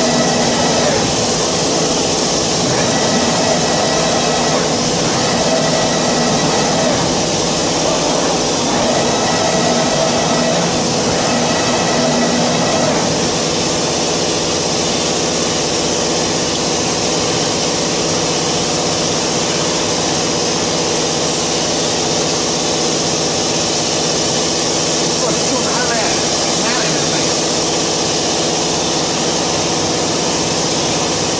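Omni 2030 ATC CNC router running: a loud, steady rushing hiss with steady whining tones over it, which stop about thirteen seconds in.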